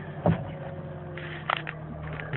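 2.2-litre Ecotec four-cylinder engine of a stationary Saturn VUE idling steadily, heard from inside the cabin. Two brief knocks, one just after the start and one past the middle.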